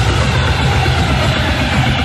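A loud, dense passage of electronic dance music: a pulsing low bass under a hissing wash, without a clear melody line.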